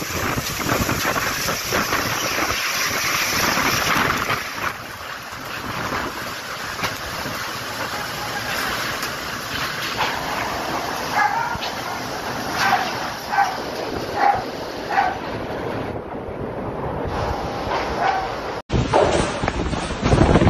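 Typhoon wind and heavy rain as a loud, steady rushing noise. In the middle a dog barks about eight times in quick succession. Near the end the sound cuts abruptly to a different, louder rush.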